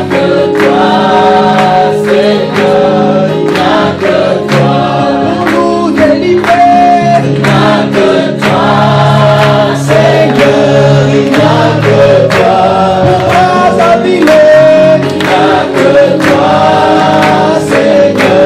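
A congregation singing a worship song together, many men's and women's voices on long held notes, over a bass line and a steady beat.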